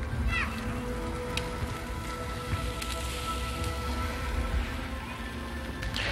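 Ground-chicken patties sizzling on a medium-high grill fire, with a few small pops. Background music with steady held notes plays under it.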